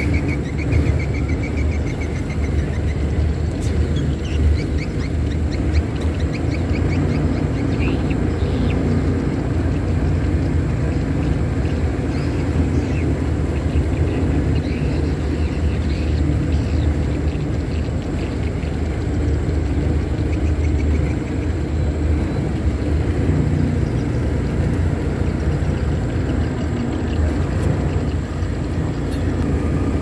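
Boat engine running steadily under way, a continuous low rumble that holds an even level throughout.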